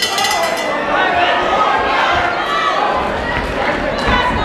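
Boxing ring bell ringing to start the round. Its bright metallic ring fades within about the first second, over a crowd shouting and chattering.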